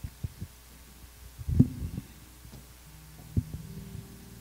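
Low, dull thumps of a handheld microphone being handled and set down at the pulpit, the loudest about one and a half seconds in, over a steady low hum from the sound system. A faint low held note comes in near the end as the music starts.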